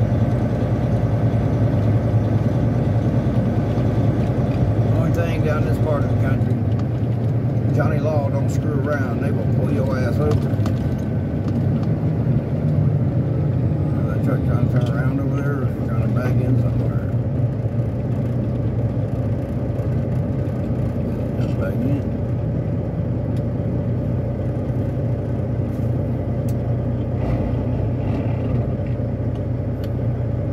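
Semi truck's diesel engine running steadily under way, heard from inside the cab as a continuous low drone.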